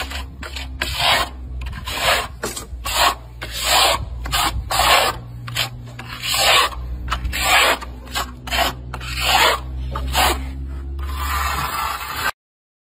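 A plastering trowel scraping wet cement render across a block wall in repeated sweeping strokes, one or two a second and uneven, over a low steady hum.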